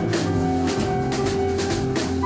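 Live band music without vocals: a drum kit keeps a steady beat of cymbal and drum hits under sustained keyboard chords from a Yamaha S90 ES.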